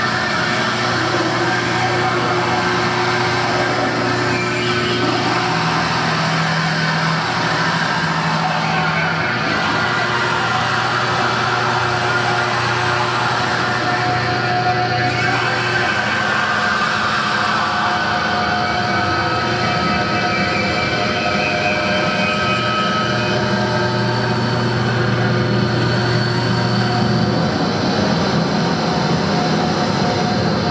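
Live drone-noise music played through effects pedals and amplifiers: a dense, loud, unbroken wash with low held tones underneath that change every few seconds, drop out past the middle and come back near the end.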